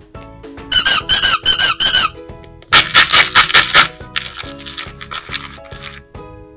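Rubber squeeze toys squeaking as they are squeezed, in quick runs of short squeaks: a loud run of about four about a second in, another loud run near the middle, and a fainter run after it.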